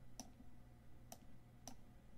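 Three faint, sharp clicks from working a computer, spaced about half a second to a second apart, over a low steady hum.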